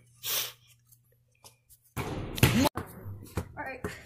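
Brief indistinct voices with a short hiss near the start and a second or so of near silence in between.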